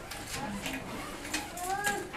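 Classroom chatter: several students talking quietly at once, with a few light clicks and rustles.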